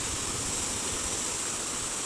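The fast, churning Neelam River rushing steadily over rapids.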